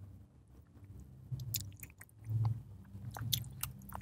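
Quiet close-up eating sounds: chewing and small wet mouth clicks as food is eaten by hand, with a brief low hum about halfway.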